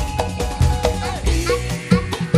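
Dangdut band music in an instrumental stretch: a melody line with sliding notes over a driving drum beat and bass.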